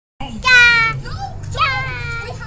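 A child's high-pitched voice: a loud, drawn-out call falling slightly in pitch, then a second, shorter call about a second later.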